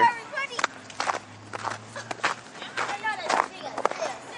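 Footsteps on snow-covered ground, roughly one step every half second.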